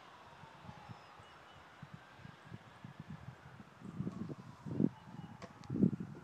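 Footsteps on a wooden deck: soft, irregular low thuds as someone walks across the boards, growing louder toward the end.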